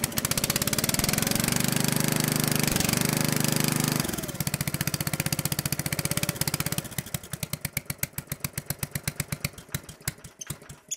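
Small gas engine on a homemade log splitter running after being brought back to life from sitting unused. It runs fast and steady for about four seconds, then drops to a slower, uneven run, its separate firing beats spacing out toward the end.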